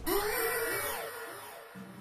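Dramatic music sting: a sudden whooshing hit, then a quick run of repeated falling notes that fades out.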